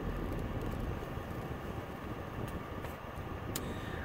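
Steady low rumble of a car's engine and road noise heard from inside the cabin while driving, with a faint click about three and a half seconds in.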